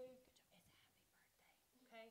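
Near silence with faint whispered voices, a short faint word near the end.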